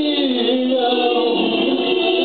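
A woman singing wordless held notes, with several vocal lines sounding at once in harmony, some holding steady and one gliding up and down.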